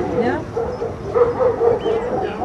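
A dog whining and yipping in a run of short, repeated calls.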